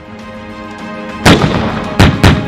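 Merkava Mk.4 tank's 120 mm smoothbore main gun firing over background music with sustained notes: one heavy shot a little past halfway, trailing off in a rumble, and a second shot right at the end.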